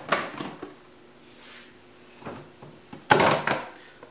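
Rummaging for a plastic food container: a knock at the start, a few small knocks, then a louder clatter about three seconds in.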